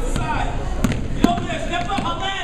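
A basketball dribbled on a hardwood gym floor, the two loudest bounces coming about a second in. Voices in the gym run throughout.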